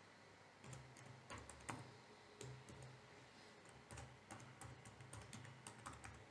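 Faint computer keyboard typing: a dozen or so irregularly spaced key presses as a word is typed.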